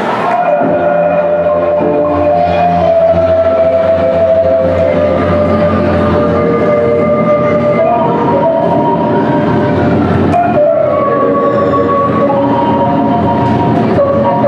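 Folk dance music played on marimba, loud and steady, with no speech.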